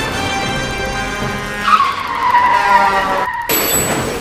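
Music, then a loud car tyre screech about halfway through, sliding slowly down in pitch for about a second and a half. It breaks off briefly before a sudden noisy burst near the end.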